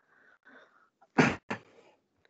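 A man sneezes: a faint intake of breath, then a loud, sharp burst just after a second in, followed by a shorter second burst.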